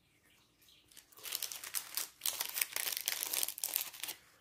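Plastic sticker bags and paper stickers crinkling as they are handled. It starts about a second in, with a short break near two seconds.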